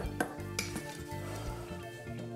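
A metal spoon clinking and scraping against a stainless steel mixing bowl while scooping thick cupcake batter, with a few sharp clinks in the first half-second.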